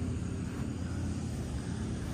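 Steady low background rumble with a faint hiss, no distinct event.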